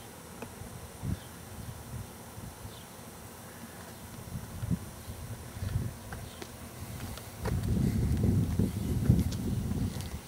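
Irregular low rumble of wind and handling noise on the camera microphone, growing much stronger about three quarters of the way through, with a few faint ticks.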